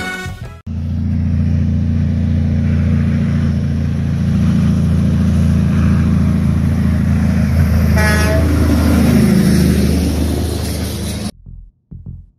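Heavy diesel big-rig truck pulling a loaded lowboy trailer, its engine running with a steady deep rumble that shifts in pitch after about nine seconds. A short horn toot sounds about eight seconds in, and the sound cuts off suddenly near the end.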